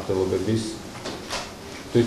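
A man speaking Georgian into a desk microphone, reading aloud in short phrases with brief pauses between them.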